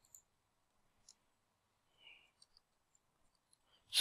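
Near silence with a few faint, scattered clicks of a computer mouse.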